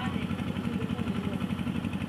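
An engine running steadily at idle, with an even, rhythmic throb.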